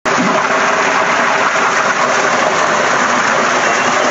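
Spring water pouring from a pipe spout and splashing into a pool, a loud, steady rush.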